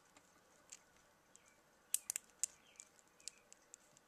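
Faint clicks of an action figure's plastic Revoltech ratchet joints being turned by hand: a few scattered clicks, the loudest two about two and two and a half seconds in.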